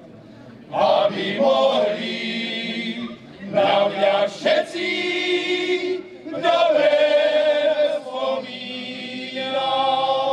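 Male folk choir singing a Moravian folk song unaccompanied, in several voices. The phrases are held long, with brief breaths between them: the singing comes back in under a second, with short pauses around three and six seconds in.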